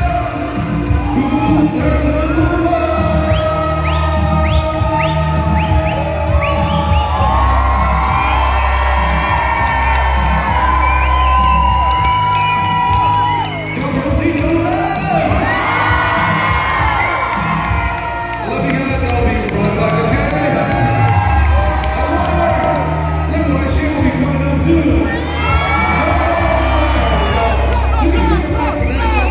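Amplified live pop music with heavy bass and a male singer on a microphone, with a crowd cheering and shouting over it in several loud bursts.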